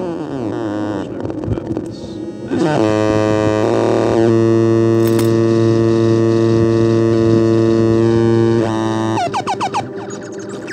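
Electronic synthesizer music. Falling pitch glides come first, then a loud, steady held synth chord from about three seconds in until about nine seconds, and it closes with quick wobbling pitch sweeps.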